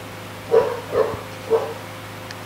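Three short, barking calls about half a second apart, over a faint steady hum.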